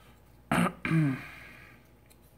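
A man clearing his throat: a short rasp about half a second in, then a brief voiced "ahem" that falls in pitch.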